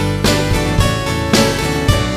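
A live band playing an instrumental passage led by a strummed acoustic guitar, with strong strokes about every half second.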